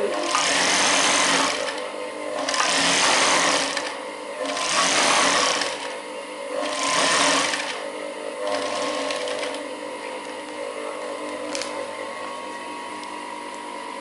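Industrial straight-stitch sewing machine sewing a second row of topstitching on knit fabric in four short runs of about a second each, with brief stops between them. After the fourth run the stitching stops and a steady, lower hum carries on.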